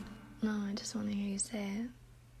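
Soft sung vocals from a background song: three short notes on about the same pitch, the last one rising at its end.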